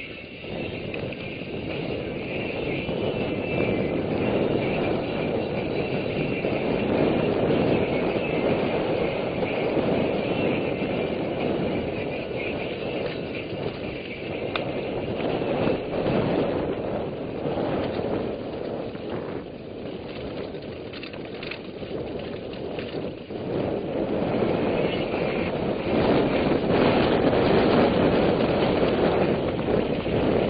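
Wind rushing over the camera microphone, mixed with the noise of a mountain bike rolling and rattling over a dirt track on a fast downhill. It builds over the first few seconds, eases around two-thirds of the way through, then grows louder again.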